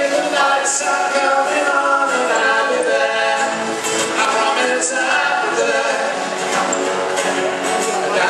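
Live amplified music: a singer at a microphone with acoustic guitar accompaniment, the song running on steadily.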